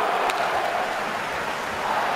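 Steady hubbub of a large crowd in an ice hockey arena, with one faint click about a third of a second in.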